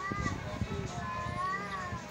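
Music with a high melody that glides up and down over a low, uneven beat.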